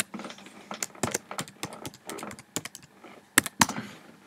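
Irregular clicks and taps on a computer keyboard, about a dozen in quick uneven succession, with two louder clicks near the end.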